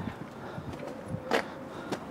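Footsteps on a stone walkway, a few scattered taps with one sharper click a little past halfway.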